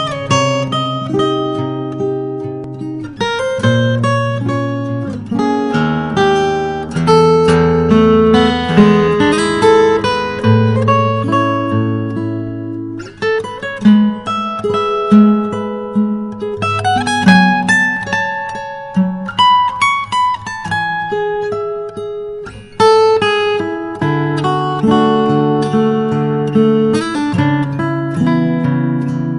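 Solo fingerstyle acoustic guitar playing a melodic instrumental, with bass notes under a plucked melody line; each note rings and fades.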